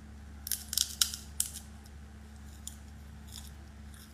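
A quick cluster of crisp, high crunching clicks about half a second in, typical of chewing crispy fried chicken close to a phone microphone, with a few fainter clicks later. A steady low hum runs underneath.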